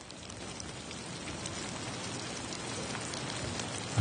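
Steady rain falling onto lake water, fading in and growing gradually louder.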